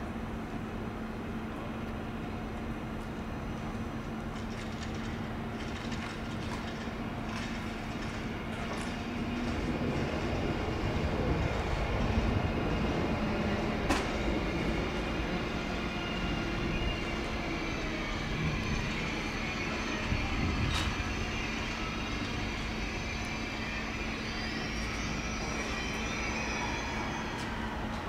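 ICE 3 high-speed electric train pulling in along the platform and slowing to a stop. The running noise swells as it passes close, with a couple of sharp clicks and whines that fall in pitch as it slows.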